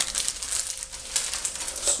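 Plastic piping bag crinkling as it is handled, a run of irregular small crackles and clicks.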